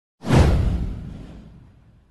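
Whoosh sound effect for an animated intro: one sudden swoosh with a deep low rumble beneath it, sweeping downward and fading away over about a second and a half.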